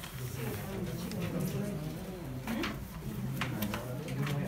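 Indistinct voices chatting in a classroom, not clear enough to make out words, with a couple of brief light clicks about two and a half and three and a half seconds in.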